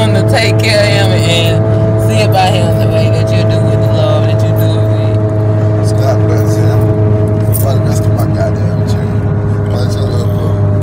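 Steady low drone inside a car cabin, with music playing and indistinct voices over it.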